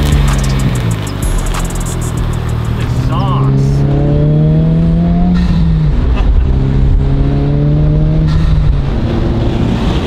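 Honda Civic Type R (FL5) turbocharged 2.0-litre four-cylinder, fitted with an aftermarket PRL intake, accelerating hard through the gears, heard from inside the cabin. The engine note climbs, drops at an upshift about five and a half seconds in, then climbs again. There is a brief fluttering turbo chirp at an earlier gear change about three seconds in.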